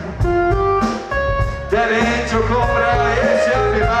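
Loud live hip-hop concert music over a PA: a voice singing a stepped melody over a steady beat and deep bass.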